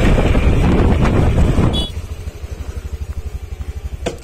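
Honda PGM-FI scooter's single-cylinder engine running while riding, with loud road and wind noise, then, after an abrupt change a little under two seconds in, idling at a standstill with an even, rapid firing pulse.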